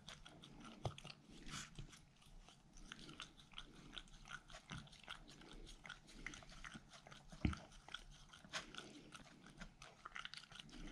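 A small dog eating wet food from a bowl: faint, irregular chewing, smacking and lip-licking. A sharper knock comes about a second in, and the loudest one about seven and a half seconds in.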